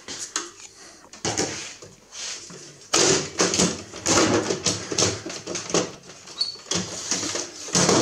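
Plug-in relay modules of an HP 3495A scanner being pulled out of their edge connectors and handled against the sheet-metal chassis: a run of clattering knocks, scrapes and rattles of metal and plastic, busiest in the middle.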